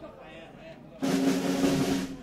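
Snare drum roll that starts suddenly about a second in and runs to the end, with a held voice saying "Hello" over it.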